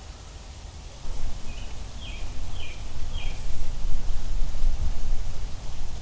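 Outdoor ambience: a steady low rumble that grows louder about a second in, with a bird giving four short, falling chirps about half a second apart near the middle.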